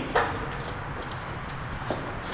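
A short knock just after the start and a lighter click near the end, over steady low room noise.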